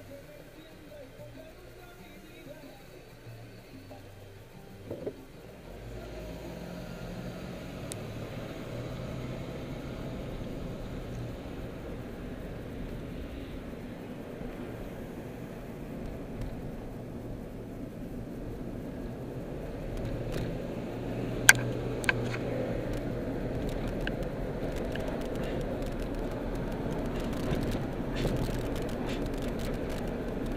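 Car running as heard from inside the cabin: quiet at first while stopped, then a steady engine and tyre rumble that rises about five seconds in as the car pulls away and keeps driving. Two sharp clicks come about two-thirds of the way through.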